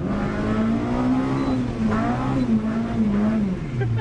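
Mitsubishi Lancer MX MIVEC four-cylinder engine revving hard in second gear, heard from inside the cabin: the revs jump up at once, waver as the tyres spin on the wet road, and drop back just before the end as the throttle is lifted.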